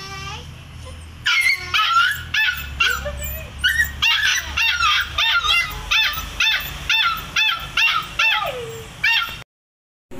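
Puppy yipping and whimpering in a rapid series of short high-pitched cries, about two a second, cutting off suddenly near the end.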